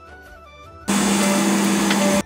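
Faint background music, then about a second in a loud, steady rushing noise with a low hum sets in abruptly: airliner cabin noise from the air system and engines.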